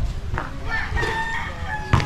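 A rooster crowing, one long held call in the middle and another starting near the end, over sharp thumps of a basketball bouncing on a concrete court.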